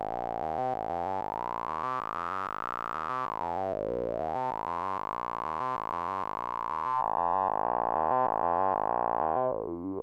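Modular synthesizer notes in a rapid stepped sequence, run through a Haible Dual Wasp filter set to band-pass, with a whistling resonant peak. The peak sweeps down and back up about four seconds in and again near the end. About seven seconds in, the tone suddenly loses its top treble.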